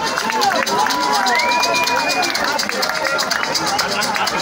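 Techno from a DJ set playing over the PA with a fast, even hi-hat pattern, mixed with crowd voices and whoops close to the microphone.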